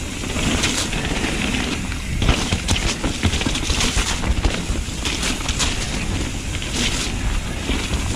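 Mountain bike descending a wet dirt forest trail at speed, heard from a chest-mounted camera: a steady rumble of tyres and suspension over the rough ground, with frequent rattles and knocks from the bike.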